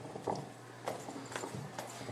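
A few faint knocks, about four in two seconds and unevenly spaced, over a low steady room hum.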